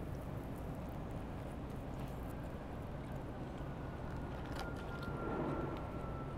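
Steady city-street traffic rumble. About four and a half seconds in, a faint thin high tone comes in and holds.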